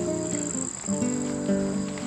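Insects singing in a steady high-pitched chorus, with background music of held notes underneath.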